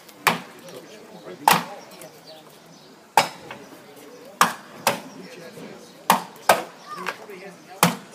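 Steel axe biting into an upright wooden block in a standing chop: about eight sharp chops roughly a second apart, some coming in quick pairs.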